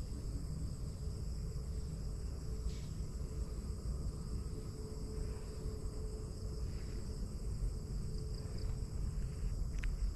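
Steady, high-pitched chorus of crickets and other insects, with a low rumble underneath.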